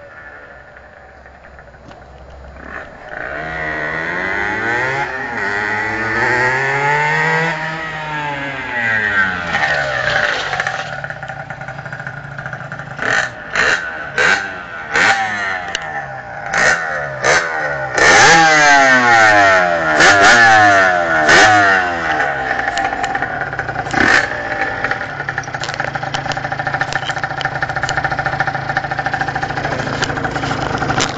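Yamaha TZR 50 two-stroke engine, bored out to 75cc. The bike rides around with its engine note rising and falling, then stands while the throttle is blipped in about a dozen sharp revs, and settles to a steady idle near the end.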